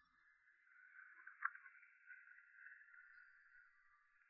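Near silence: a faint steady hiss, with one brief faint click about a second and a half in.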